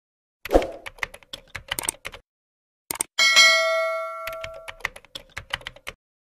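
Subscribe-button animation sound effects: a run of quick mouse-like clicks, then a bright bell ding about three seconds in that rings out for about a second and a half, with more clicks around and after it.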